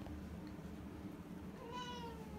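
A domestic cat meowing once near the end, a single drawn-out call that falls slightly in pitch.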